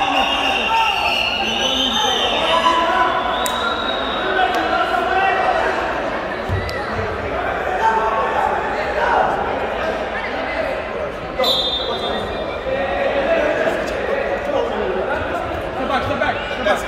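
Many voices of players and onlookers talking and calling out, echoing in a gymnasium hall, with a low thud of the futsal ball on the wooden floor about six and a half seconds in.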